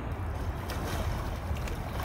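Wind rumbling on the microphone, with lake water sloshing around people standing in it from about half a second in.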